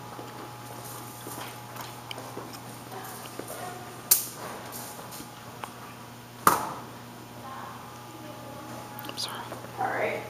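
Two sharp thumps of a rubber playground ball in a tiled hallway, about four seconds and six and a half seconds in, the second one louder and echoing briefly.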